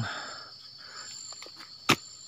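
Steady high-pitched drone of forest insects, with a soft rustle of leaves and undergrowth and one sharp knock near the end.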